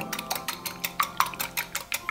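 Small wire whisk beating an egg in a glass bowl, its wires clicking rapidly against the glass, about eight clicks a second. The egg is being beaten with a pinch of salt to break its viscosity for an egg wash.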